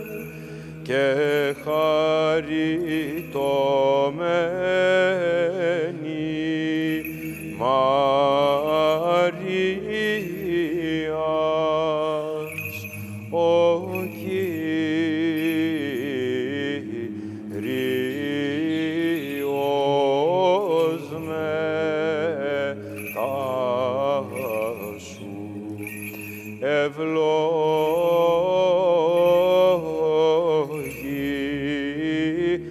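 Byzantine chant: a melismatic sung line, winding up and down in long phrases over a steady low held drone note (ison).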